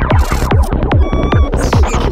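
Dark psytrance music: a pounding kick drum about every 0.4 s with a rolling bassline between the kicks, and short gliding, zapping synth effects on top.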